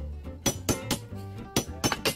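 Steel spike mauls striking railroad spikes into wooden sleepers: several sharp metallic clinks in quick succession, over background music.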